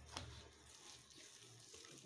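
Near silence: faint room tone with one short, soft click just after the start.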